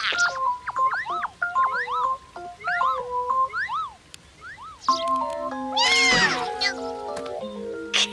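Light cartoon background music with a kitten's short, high mews in quick succession. Sustained music chords come in about five seconds in, with one louder, longer cat cry just after.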